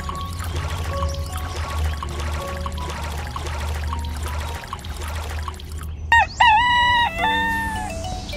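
Water pouring from a small plastic watering can onto sand, under background music. About six seconds in, a rooster crows once, loudly, for about a second and a half.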